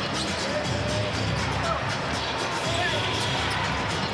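Arena sound of a live basketball game: a basketball dribbled on the hardwood court over crowd noise, with music playing over the arena's speakers.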